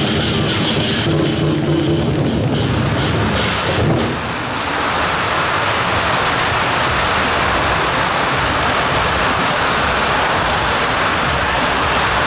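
Firecracker strings going off in a dense, continuous crackle that settles into a steady hiss-like roar from about four seconds in. Over the first four seconds, music and separate sharp cracks are heard along with it.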